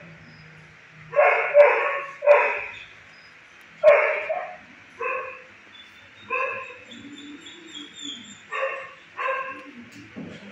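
A dog barking: about eight single barks spaced a second or so apart. The loudest come in the first four seconds and the later ones are softer.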